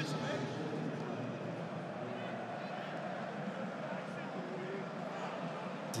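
Steady background noise of a football stadium with no crowd in it, with faint distant voices, such as players calling, drifting in now and then.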